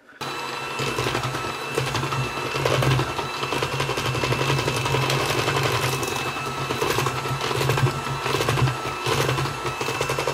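Electric hand mixer switched on at medium speed, its motor running with a steady hum and a thin whine as the beaters work flour into creamed cake batter in a stainless steel bowl.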